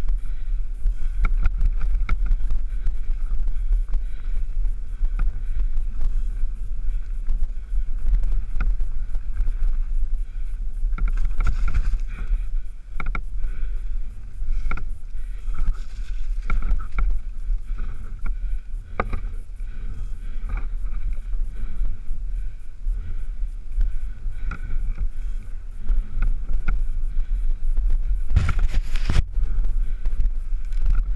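Mountain bike rolling fast over a rough, rutted dirt track, with wind buffeting the microphone as a constant low rumble and frequent knocks and rattles from the bike over bumps. There is a louder clatter near the end.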